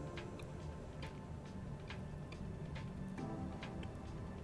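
Faint, irregular small clicks of steel jewelry pliers, wire and black spinel beads being handled as a wire loop is gripped, over soft background music.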